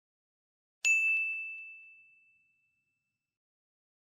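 A notification-bell ding sound effect: one bright chime struck about a second in, ringing on a single clear tone and fading away over a second and a half.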